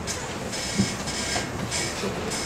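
Steady rushing room noise with faint humming tones, broken by a couple of soft knocks about a second in.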